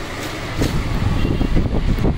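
A computerized multi-needle embroidery machine running, a dense, steady low mechanical rumble.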